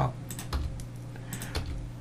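A few scattered clicks and taps from a computer keyboard and mouse, over a low steady hum, as a 3D model is scaled in Blender.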